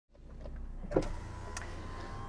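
Sounds of a stationary Land Rover Freelander: a steady low hum fading in, with a thump about a second in and a shorter click a little after.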